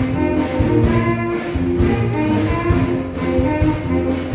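Live big band playing: a saxophone section holding chords over piano and drums, with a steady beat.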